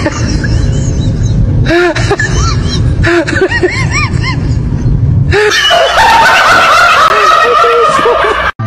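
Repeated snickering laughter in short rise-and-fall bursts over music with a heavy low bass. The mix turns busier and brighter about two-thirds of the way through.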